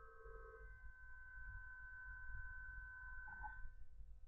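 Faint room tone: a few steady, high, humming tones over a low rumble, the lowest tone fading out within the first second and the rest fading just before the end.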